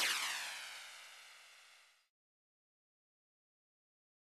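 A whoosh-style editing sound effect that swells to a peak and then sweeps downward in pitch as it fades, cutting off abruptly about two seconds in, followed by silence.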